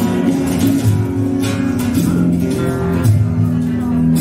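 Live Andalusian rock band playing: a strummed acoustic-electric guitar over electric bass notes, with hand percussion and cymbal hits.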